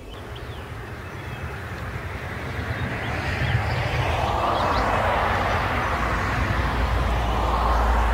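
Honeybees buzzing in a dense hum around an opened hive as a frame of brood is lifted out. The hum grows louder over the first few seconds and then holds, with a low rumble underneath.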